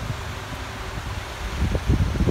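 Wind buffeting the microphone outdoors: an irregular low rumble in gusts, strongest just before the end.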